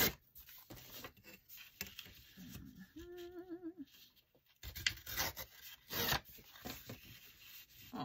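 Black paper being torn by hand along its edges: a few short, rough ripping and rubbing sounds, loudest about five and six seconds in. A short hummed note comes about three seconds in.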